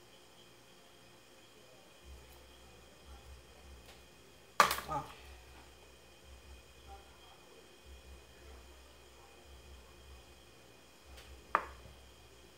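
Quiet room tone with faint handling sounds of craft work: small snips and soft taps from scissors, foam and a glue bottle. One short spoken word comes about five seconds in, and a brief sharp sound near the end.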